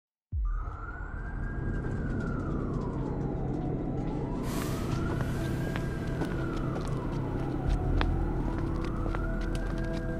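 A siren wailing slowly up and down, about one rise and fall every four seconds, over a low rumbling music bed with steady held notes.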